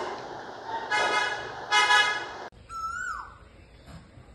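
Two short, steady toots of a vehicle horn about a second apart. Then, after an abrupt cut, a single bird call falls in pitch over a quiet outdoor background.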